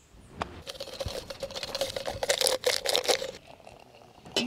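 Water poured from a small camping kettle into a stainless steel cup: a splashy trickle with a steady pitch, growing louder, that stops abruptly about three and a half seconds in, after a light clink as the kettle is picked up.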